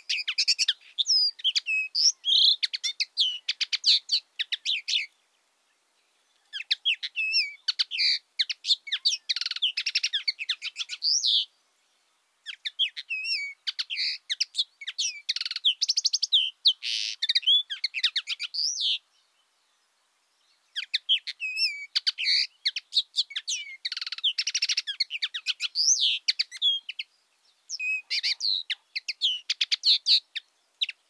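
A songbird singing rapid, twittering chirps and trills in long phrases of about five to six seconds each, with short silent pauses between them.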